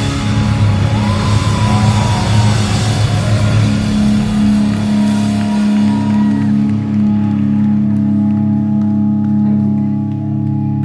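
A live rock band (guitars, bass, drums and vocals) playing loud. Past the middle the drums and cymbals drop away and a held low chord rings on.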